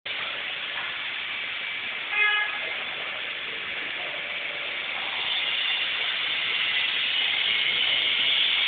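Railway station background noise, a steady hiss, with one short horn toot about two seconds in.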